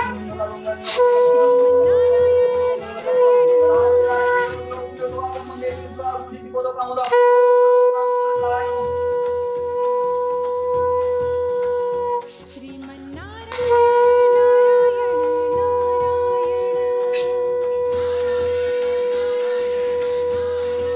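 A wind instrument sounding long held notes at one steady pitch, with short breaks between the notes; the longest lasts about five seconds.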